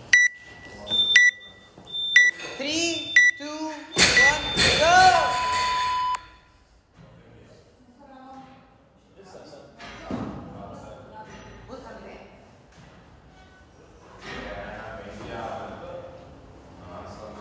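Countdown timer beeping: four short beeps about a second apart, then a longer, louder final tone about four seconds in that stops suddenly near six seconds, with voices calling out over it.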